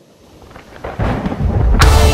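A deep, thunder-like rumble swells from about half a second in and grows loud, and near the end a power metal band comes in at full volume with guitars.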